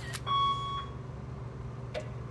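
A single short electronic beep, one steady tone lasting about half a second, a little way in, over a low steady hum.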